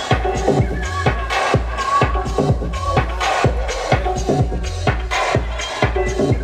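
Electronic dance music played by a DJ over a festival sound system: a steady four-on-the-floor kick drum at about two beats a second over a deep bass line, with a short synth note recurring on top.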